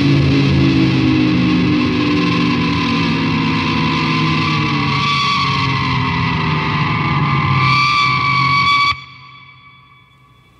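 Electric guitar with distortion through an amp, holding long sustained notes whose pitch sags slightly and comes back. It cuts off suddenly about nine seconds in, leaving only faint amp hiss.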